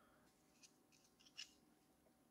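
Near silence, with a few faint small clicks and rustles from gloved hands folding the plastic hinges and temple arms of clear 3M safety glasses, about half a second and a second and a half in.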